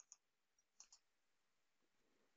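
Near silence, broken by a few faint computer mouse clicks: a pair right at the start and another pair just under a second in.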